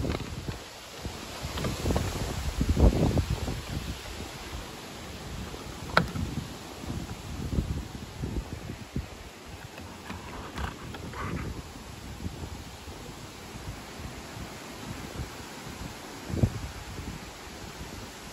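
Wind gusting across the microphone over the rustle of blowing trees, strongest about two to three seconds in. A sharp click comes about six seconds in and a duller knock near the end.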